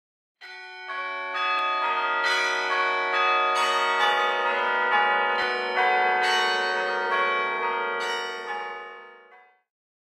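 Bells ringing, with a new strike about every half second. The tones ring on and overlap, then fade out near the end.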